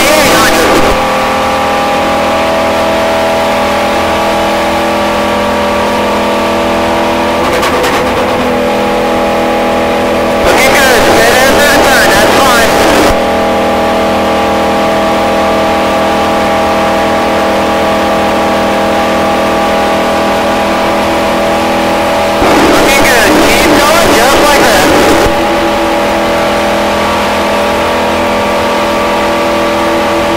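V8 stock car engine running at a steady high rpm, heard from inside the cockpit at speed, its pitch held constant throughout. Twice, about ten and twenty-two seconds in, a louder burst of radio transmission lasting two to three seconds cuts in over it.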